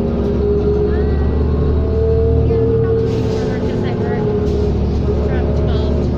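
A 2003 New Flyer D40LF diesel city bus in motion, heard from inside the passenger cabin: a steady low engine and drivetrain drone with a whine that swells a little about two seconds in and then eases.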